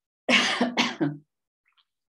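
A woman's short, breathy vocal outburst: three quick pulses within about a second, starting a moment in.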